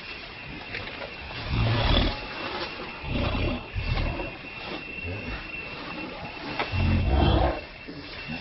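Macaques scuffling on dry leaf litter as an adult pins a young one, with low growling sounds in three bursts: about one and a half seconds in, around three to four seconds, and near the end.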